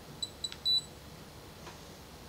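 ATID AT288 Bluetooth UHF RFID reader beeping as it is switched on: three short high beeps within the first second, the last one longer.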